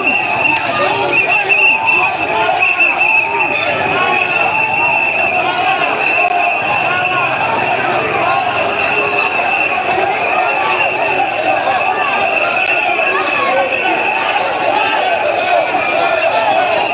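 A large crowd of street protesters shouting and chanting, many voices overlapping at a steady loud level. A steady high-pitched tone runs under the voices.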